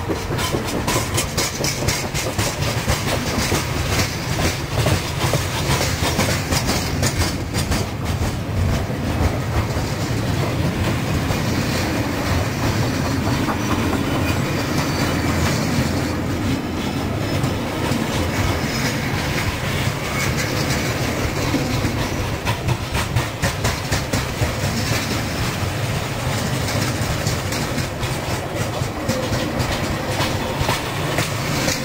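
Freight train wagons rolling past close by, their wheels clicking steadily over the rail joints over a continuous rumble.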